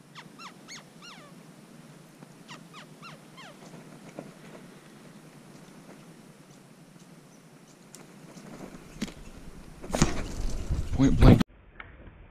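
Squirrel calling: two quick runs of short barks that slide down in pitch, in the first few seconds. About ten seconds in comes a loud burst of knocks and rustling that cuts off abruptly, then a short laugh.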